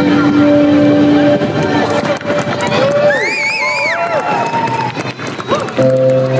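A live band's held chord dies away, leaving crowd noise with one voice calling out on a wavering pitch in the middle, and the band comes back in with sustained notes near the end.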